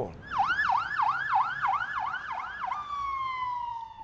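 Fire engine siren in a fast yelp, rising and falling about three to four times a second. Near the end it switches to one long tone that slowly falls in pitch.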